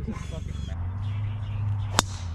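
Wind rumbling on the microphone with a brief voice in the first moment, then near the end a single sharp crack of a driver striking a golf ball off the tee.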